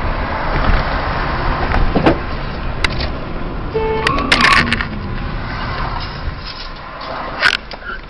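Car driving on a city road, heard from inside the cabin through a dashcam: steady engine and road noise. About four seconds in there is a short tone followed by a loud sharp sound, and there is another sharp sound near the end.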